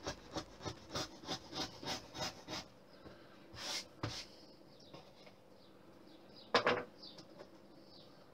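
Steel V-gouge lino cutter scraping a wire groove in a strip of wood in quick short strokes, about five a second, stopping after about two and a half seconds. A soft rustle follows, then one sharp knock about six and a half seconds in, the loudest sound.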